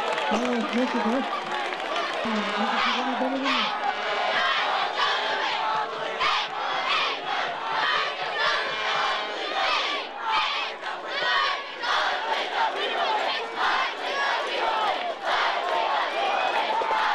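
Football crowd noise: many voices shouting and cheering at once, steady throughout, with a few raised voices standing out in the first few seconds.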